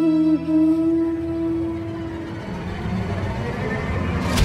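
Background music score: a held, sustained melodic note that fades out about two and a half seconds in, while a low, dark swell builds beneath it.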